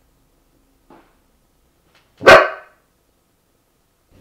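A husky-mix dog barks once, short and loud, a little over two seconds in, after a faint short sound about a second in.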